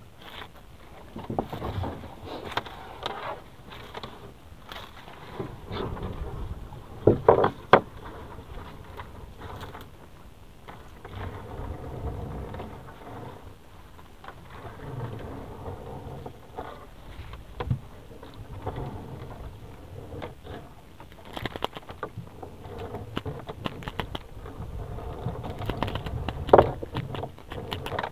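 A monofilament gillnet being hauled by hand into a small boat: irregular rustling and scraping of net and gloves against the hull, with scattered knocks and a louder cluster of them about seven seconds in.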